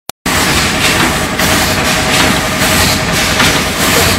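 Bottle packing and capping machine running, a steady mechanical din with a faint steady tone and a surge of hiss about twice a second.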